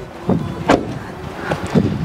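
Front door of a Volkswagen Polo hatchback swung shut, landing as one sharp thud a little under a second in.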